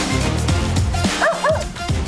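A small dog gives a few short high calls about a second in, over upbeat background music with a steady beat.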